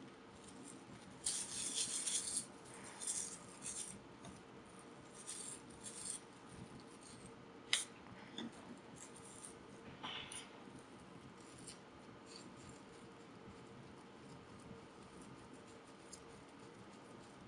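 Faint rustling and rubbing of lens paper wiped over a glass microscope slide in short scratchy strokes, busiest in the first half, with a single sharp click a little before the middle.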